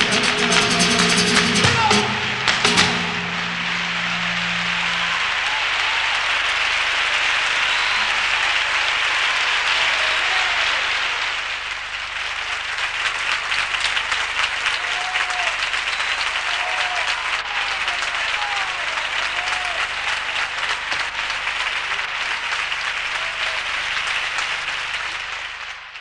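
A flamenco tarantos ends on a final strummed flamenco-guitar chord about two seconds in, with voice and hand-claps under it. Sustained audience applause follows, with scattered shouts from the crowd, and fades out at the very end.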